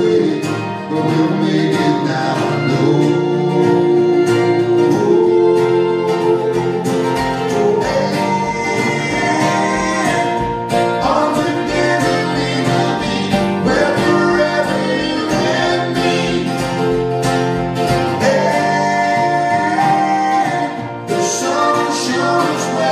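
Live folk-pop song: a male lead voice singing over a strummed acoustic guitar and other plucked-string accompaniment.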